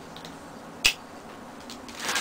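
A single short, sharp click a little before the middle, over faint room noise.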